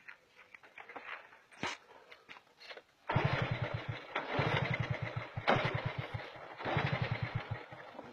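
Motorcycle-style engine sound with a fast, even throb. It starts suddenly about three seconds in and runs in three stretches with brief drops between them, after a few faint clicks.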